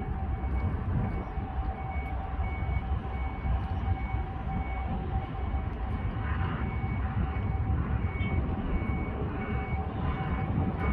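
Vehicle reversing alarm beeping about twice a second, over a steady mid-pitched tone and a continuous low rumble.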